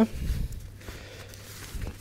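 Quiet handling noise of a stroller canopy being stretched and fitted onto the frame by hand: a low bump at the start, soft fabric and frame noise, and a few light clicks near the end.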